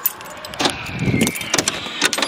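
Cheap generic central-locking door solenoids on a converted ambulance's locker doors thunking as they lock and unlock, with sharp knocks about half a second in and again about a second and a half in.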